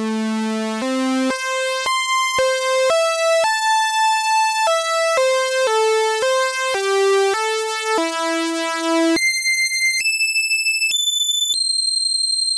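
A DIY analog voltage-controlled oscillator and a DeepMind 12's digitally controlled oscillator play the same notes in unison: a run of short held synth notes, about two a second, followed near the end by four very high notes stepping upward. The two stay locked in pitch through the middle range. On the very top notes they drift slightly apart, heard as a light wavering: the VCO's tracking is starting to diverge at the top of its range.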